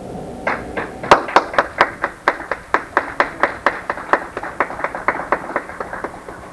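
Hand clapping in a steady, even rhythm of sharp single claps, about four to five a second, starting about half a second in.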